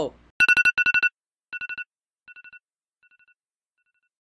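A phone alarm ringtone sounding as a wake-up alarm: a quick run of electronic beeps in two pitches, followed by three ever fainter repeats of the same run.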